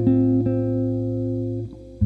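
Solo electric guitar playing jazz chords: one chord struck at the start, a new chord about half a second in, left to ring and fading away shortly before the end.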